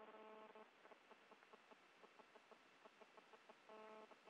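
Near silence: a faint steady hum in the first moment and again near the end, with a run of faint ticks, about five a second, in between.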